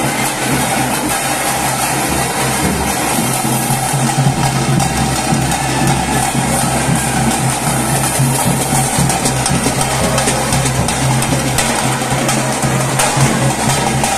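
Traditional temple procession band playing loudly and without a break: drums beaten with sticks, giving a dense run of strokes, over a steady reed-pipe drone.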